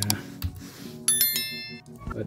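A click, then about a second in a bright bell-like ding, several high ringing tones struck at once and fading within a second: the sound effect of a subscribe-button and notification-bell animation. Soft background music plays underneath.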